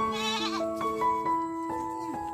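Gentle piano music with a goat bleating once, a short quavering call near the start.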